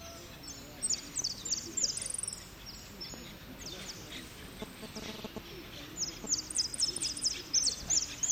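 A jilguero (saffron finch) singing its 'repique' song: fast runs of high, sharply falling chirps, about five a second. One run comes about a second in, and another starts near six seconds.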